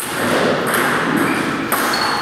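Table tennis ball clicks against the steady background noise of a large hall: a sharp tick at the start and another near the end.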